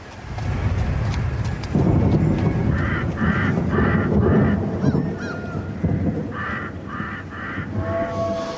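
Distorted electric guitar playing heavy metal riffs over a backing track. The sound comes in a moment after the start and gets heavier about two seconds in, with two runs of short, nasal, honking high stabs, four and then three.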